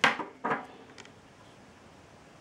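Fingers handling the plastic lens module of a dome surveillance camera. There is a sharp click at the start, a short scrape about half a second in and a faint tick near one second.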